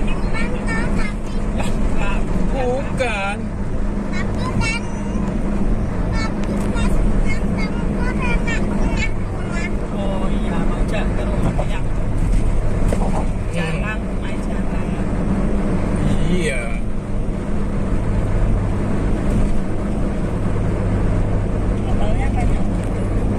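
Steady low drone of a car's engine and tyres at highway speed, heard inside the cabin, with indistinct voices over it in the first half and briefly again later.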